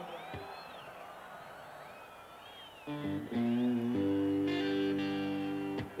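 Electric guitar coming in about halfway through: a few short strummed chords, then one chord left ringing, cut off just before the end. Before it there are only faint whistles.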